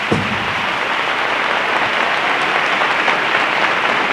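Theatre audience applauding steadily at the end of a song.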